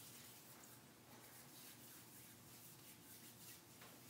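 Faint rubbing of hands together during hand hygiene, barely above near-silent room tone.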